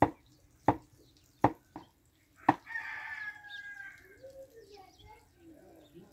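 A knife chopping on a wooden board: four sharp strokes in the first two and a half seconds. Then a rooster crows once, a long call falling slightly in pitch, followed by fainter wavering calls.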